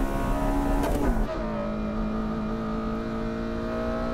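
Honda Civic K20A inline-four engines heard from inside the cabin at high revs: the note dips in pitch about a second in, then a second car's engine takes over, holding a steady high note.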